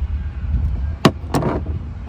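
Two sharp metallic clicks about a second in, a third of a second apart, from the metal parts of an ignition lock cylinder and its housing being handled and fitted together, over a steady low rumble.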